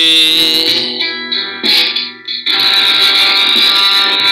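Distorted electric guitar playing a metal passage: a long held note, a brief break about two seconds in, then a thicker distorted sound.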